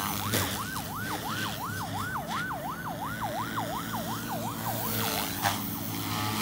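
An electronic siren in yelp mode, its pitch sweeping rapidly up and down about three times a second and fading out near the end. Beneath it runs a steady hum from the electric RC helicopter flying overhead.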